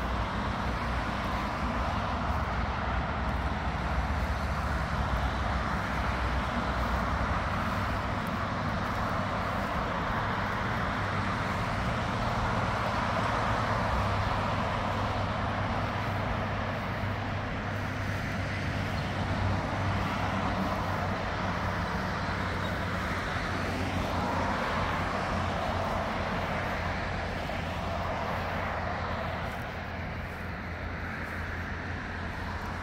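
Steady road-traffic noise: an even hiss over a low rumble that holds level throughout, with no single vehicle standing out.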